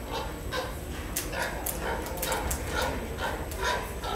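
Repeated short animal calls, two or three a second, with a few sharp clicks among them in the middle.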